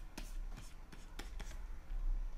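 Pen stylus on a graphics tablet: light scratchy strokes and a few short taps as a digital sketch is drawn, over a faint low hum.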